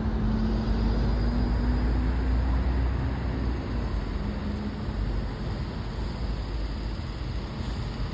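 Outdoor city ambience: a steady, deep rumble of street traffic, with a faint low hum in the first few seconds.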